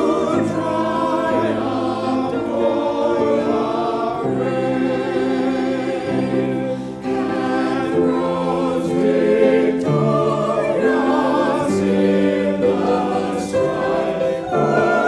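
Church choir of men's and women's voices singing an anthem, in sustained chords that change every second or two.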